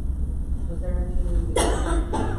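A person coughs once, sharply, about one and a half seconds in, over faint distant speech and a steady low room hum.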